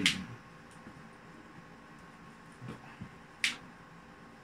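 Quiet room with soft sounds of sleeved playing cards being handled at the table, and one short, sharp snap about three and a half seconds in.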